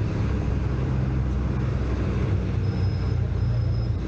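Engine of an open-sided tourist shuttle bus running steadily as it drives along, heard from on board, a steady low hum. A faint high beep repeats in short dashes through the second half.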